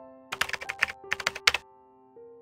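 Computer keyboard typing sound effect: a quick run of about ten key clicks in two bursts, over soft background music.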